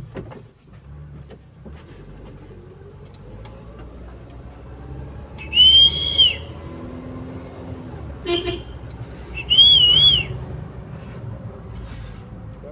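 A car's engine and road noise run inside the cabin, the engine note rising for a few seconds as it picks up speed. Two loud high whistled notes, each under a second long, come about six and ten seconds in; the first is held and the second wavers up and down. There is a short knock in between.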